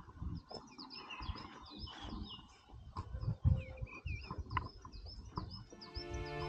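Songbirds singing, a busy run of short high chirps repeating throughout, with a few low thumps underneath, the loudest about halfway through.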